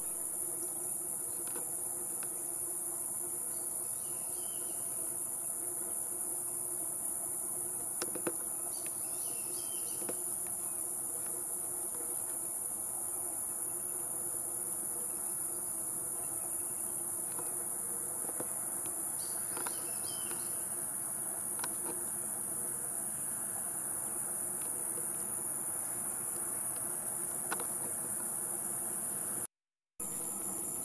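Steady, unbroken high-pitched insect chorus of crickets or similar insects in a marsh.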